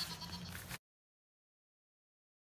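Faint outdoor background noise with a faint steady high tone, cut off abruptly under a second in, followed by complete silence where the footage is spliced.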